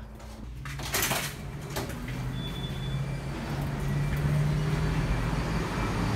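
A door clunks open about a second in, then street traffic comes up: a vehicle engine's steady low hum over road noise, growing louder.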